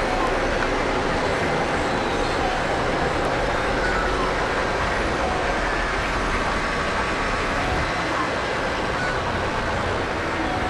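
Experimental electronic noise drone: a dense, steady wash of noise with faint held tones running through it.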